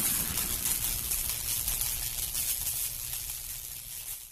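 The fading tail of an intro sound effect: a hissing, rumbling wash left after a crash, dying away steadily.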